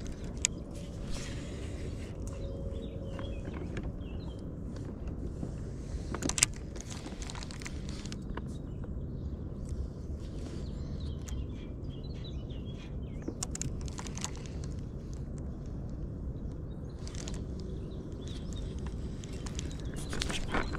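Steady low wind rumble on the microphone, with faint bird calls now and then and a few sharp clicks from handling a baitcasting reel, the loudest about six seconds in.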